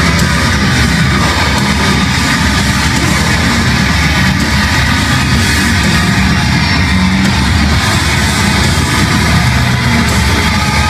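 Heavy hardcore band playing live, with distorted electric guitars and drums, loud and dense without a break, heard from within the crowd through a phone's microphone.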